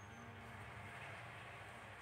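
Quiet room tone: a steady low hum with faint background noise.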